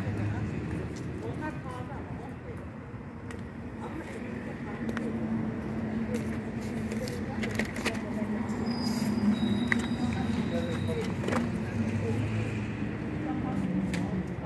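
Indistinct background voices over a steady low motor hum, with a few scattered light clicks.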